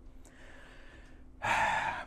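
A man's breathing between sentences: a faint breath, then a short, louder rush of breath about one and a half seconds in, like a gasp.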